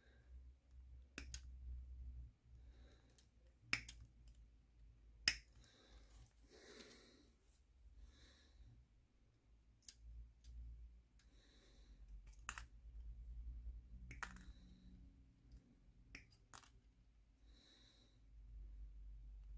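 Sprue cutters snipping small parts off a plastic model-kit sprue: sharp single clicks at irregular intervals, about nine in all, the loudest about four and five seconds in, with soft rustling of the plastic frame between.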